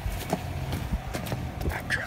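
Pickup truck engine running low and steady, with scattered light clicks and knocks over it.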